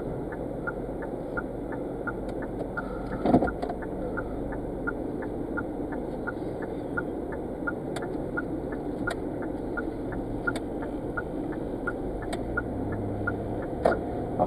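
A car driving slowly, heard from inside the cabin: a steady engine and tyre rumble, with an even light ticking about three times a second. A brief louder sound comes a little over three seconds in.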